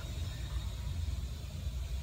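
Car engine idling: a steady low hum.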